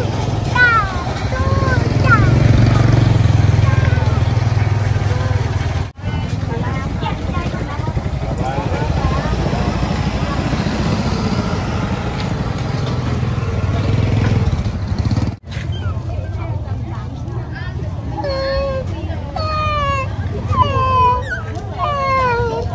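Busy street-market ambience: motorbike engines running and passing close by, with people's voices mixed in; the engine rumble is strongest in the first few seconds.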